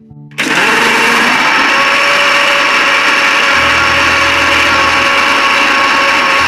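Electric mixer grinder (mixie) motor running with its small jar blending oil and seasonings into an eggless mayonnaise. It starts suddenly about half a second in and runs steady while the mixture emulsifies into a creamy mayonnaise.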